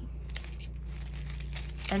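Packaging crinkling faintly as a small gift is handled, over a steady low hum.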